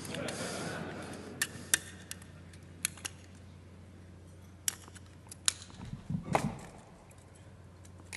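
Scissors snipping a small strip of metal from an aluminium beer can to make a handcuff shim: a handful of sharp, irregularly spaced clicks. Near the end comes a duller knock.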